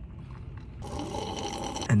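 A sip of iced coffee drawn from a plastic cup, lasting about a second and starting about a second in.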